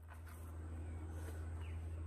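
Quiet outdoor background: a steady low hum, with one faint short falling chirp about one and a half seconds in.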